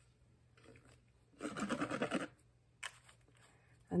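Liquid glue squeezed from a squeeze bottle onto cardstock, with a short sputtering squirt about one and a half seconds in, then a single light click.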